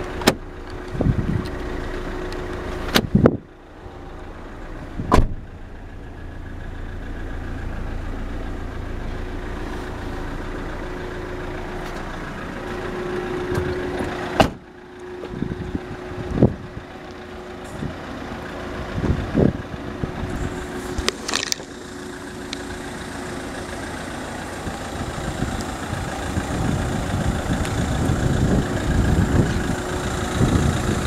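Car engine idling steadily, broken by about seven sharp knocks and thuds, some with a short drop in the engine sound after them.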